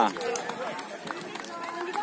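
Background voices of players and onlookers calling across an open beach court, with a few faint light clicks.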